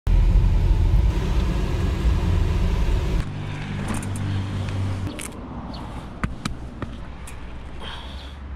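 Steady low rumble of a car driving, heard from inside the cabin, for about three seconds; it then cuts off sharply to a quieter outdoor hum with a few sharp clicks.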